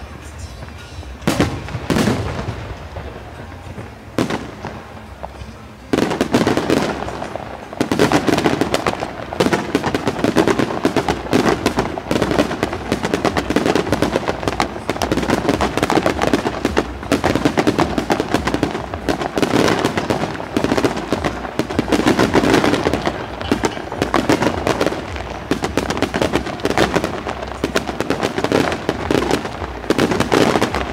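Aerial fireworks display: a few separate shell bursts some seconds apart, then, from about six seconds in, a dense continuous barrage of rapid bangs and crackle.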